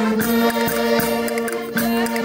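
Live Portuguese folk music: a diatonic button accordion holding steady chords, with singing voices and hand percussion (a wooden block struck with a stick and a tambourine) tapping out an even beat.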